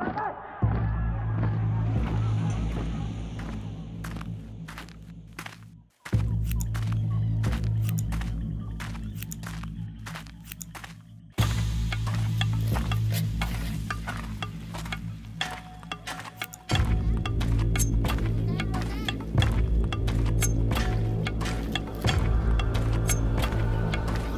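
Film trailer score: a deep, sustained bass drone with fast ticking percussion over it. It drops away and comes back with a sudden heavy hit about every five to six seconds, building in sections.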